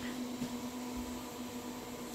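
A steady low hum over a faint even hiss, with no distinct events: the background hum of some machine or appliance running in a small room.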